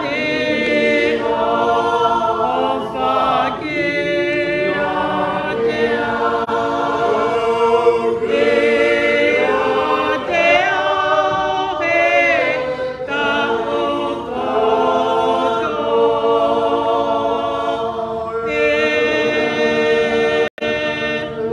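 A church choir singing a hymn in Tongan, several voices together and unaccompanied, holding long notes.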